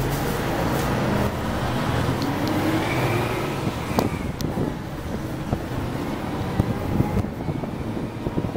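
City bus engine and road noise heard from inside the cabin while the bus drives along. The engine pitch rises and falls about two to three seconds in, and there is a sharp click at about four seconds. Irregular low knocks and rattles follow near the end.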